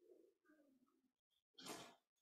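Near silence, with a faint low wavering sound in the first second, then a brief rustle near the end as a binder is opened and handled.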